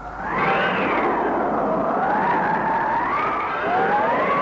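Cartoon sound effect: a steady rushing noise with a whistling tone that drifts slowly up and down in pitch, and a second whistle rising near the end.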